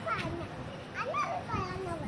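A young child's high voice, talking or calling out in a few short phrases that rise and fall in pitch.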